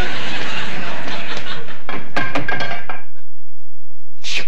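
Studio audience laughing. About two seconds in, a short clatter of knocks comes as the barred window of a stage set is shaken.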